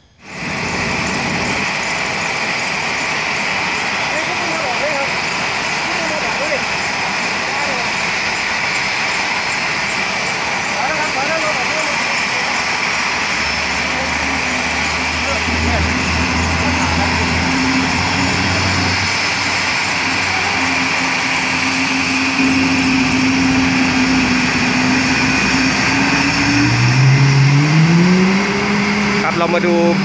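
AW189 helicopter running on the ground, its twin turboshaft engines whining and main rotor turning with a loud, steady rush. About three seconds before the end a tone rises in pitch and then holds.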